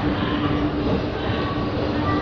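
Escalator running, a steady mechanical rumble with a constant low drone.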